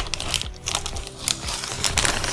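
Plastic courier mailer bag crinkling in a run of short crackles as it is handled for cutting open, over upbeat background music.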